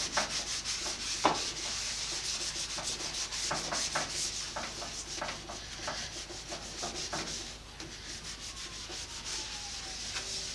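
A cloth rag rubbing over a cast-iron bandsaw table in repeated, uneven strokes, wiping off Boeshield T-9 rust remover that has loosened the rust. A single sharper knock comes about a second in.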